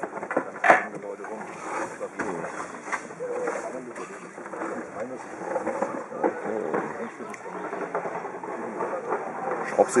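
Background chatter of several people talking at once, with one sharp knock just under a second in, like a metal part set down on a hard board.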